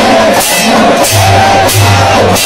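Loud temple aarti music: crashing percussion strikes about every two-thirds of a second, three in all, over a low drum beat, with a wavering voice or instrument line above.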